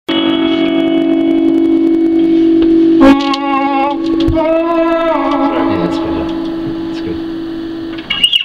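Live music in a small room: a steady held note, with wavering, vibrato-laden voice-like notes on top from about three seconds in. They slide down and fade while the held note slowly dies away.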